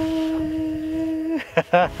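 A person's voice holding one long, steady note of joy for over a second, then breaking into short bursts of laughter near the end.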